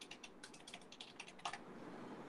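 Computer keyboard typing: a quick, faint run of keystrokes that stops about one and a half seconds in.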